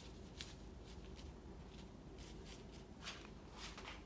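Faint swishes of a large Chinese ink brush sweeping across paper: several short strokes, a few of them louder near the end, over a low steady room hum.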